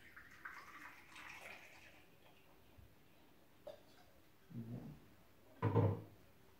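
Vodka poured from a bottle into a small metal jigger, a splashing pour lasting about two seconds. A sharp knock follows a little later, then two short low voice-like sounds near the end.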